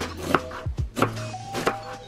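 Kitchen knife slicing through an onion on a wooden cutting board: several sharp taps as the blade meets the board, over background music.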